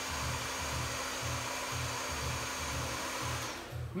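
Handheld hair dryer blowing on low speed with cool air, a steady rush with a faint motor hum, switching off about three and a half seconds in. Background music with a steady low beat plays underneath.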